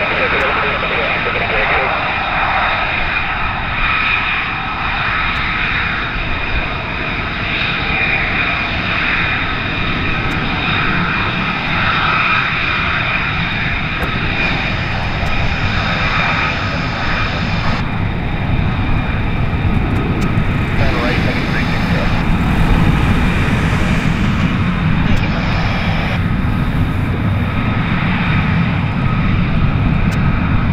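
F-35B fighter jets taxiing, their jet engines running with a steady high whine over a rumble. The low rumble builds in the second half as more jets close up near the runway.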